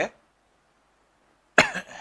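About a second and a half of near silence, then a man coughs once, briefly.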